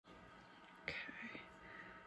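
A person whispering briefly, starting suddenly about a second in and trailing off, over a faint steady hum.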